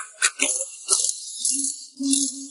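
Pneumatic impact wrench rattling on a car wheel's lug nuts, in short bursts with a longer run, driven off an air hose.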